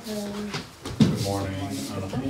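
People talking, with one sharp knock about a second in that is louder than the voices.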